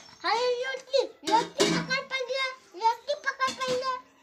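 A young child's high-pitched voice making drawn-out vocal sounds without clear words, in several runs with short breaks.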